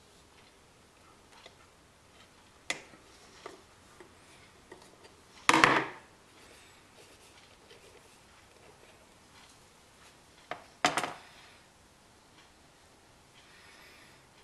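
Small outboard-motor carburetor being taken apart by hand with a screwdriver: faint scattered clicks of metal parts, and two louder metal clatters on the work tray, about five and a half and eleven seconds in.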